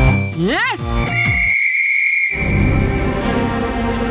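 Cartoon soundtrack: a quick rising-and-falling pitch sweep, then a steady high whistle held for about a second while the background music drops out, before the music comes back.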